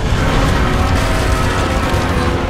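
Orchestral film score holding loud, sustained chords over a deep rumble, swelling up suddenly at the start.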